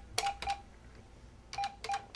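Desk telephone keypad being dialed: four short key-press beeps with clicks, a pair just after the start and another pair about a second and a half in.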